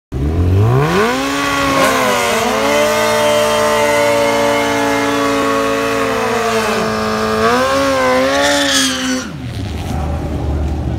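Kawasaki ZX-14 drag bike's inline-four engine revved up hard and held at high rpm for a burnout, the rear tyre spinning on the pavement. The revs dip and climb again around seven seconds, then fall away near the end.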